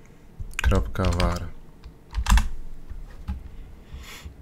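Keystrokes on a computer keyboard, a few separate presses, with a man's voice mumbling briefly about a second in.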